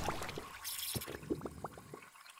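Liquid splash sound effect: a scatter of small drips and plops that fade away near the end.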